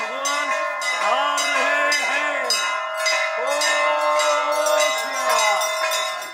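Bells ringing on and on, with pitched swells that rise and fall in pitch about once a second over the ringing.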